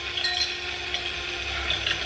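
Cordless drill running steadily with its bit grinding into a ceramic vase, the motor giving one even tone over a gritty hiss.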